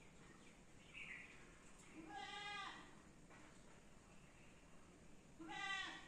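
An animal calling twice, about three seconds apart, each call short and wavering, over a faint quiet background.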